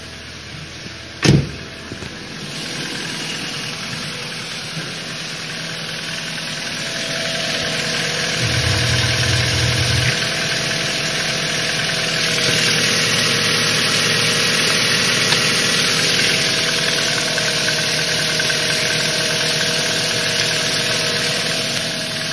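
Ford Mondeo II's 1.8-litre petrol fuel-injected engine running steadily at idle, heard close up in the engine bay, getting louder over the first half. A single sharp thump comes about a second in.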